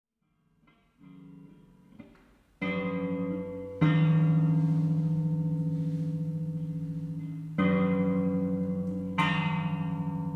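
Electric guitar sounded with an EBow, its 3rd and 5th strings coupled by a 3D-printed ring: sustained, gong-like tones made inharmonic by the preparation's added mass. The tones are faint at first, then new ones enter abruptly four times, each holding with a slow fade and a wavering beat.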